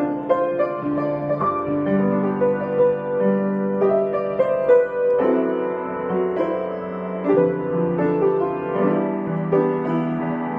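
Upright piano played solo: a Christmas song arranged in sustained chords with a melody above them, notes ringing into one another.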